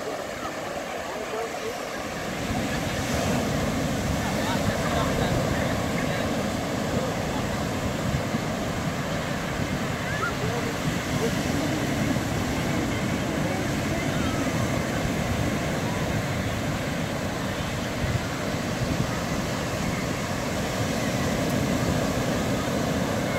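Ocean surf washing steadily onto the beach, with wind rumbling on the microphone that picks up about two seconds in.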